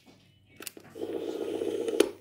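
Sony TCM-6DX cassette-corder's piano-key controls clicking, once about half a second in and again near the end, with the machine giving out a steady mid-pitched sound for about a second between the clicks.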